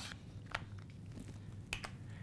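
Faint scraping of a craft cutting blade drawn through kraft poster board along a plastic circle guide, with a few sharp clicks about half a second in and twice near the end.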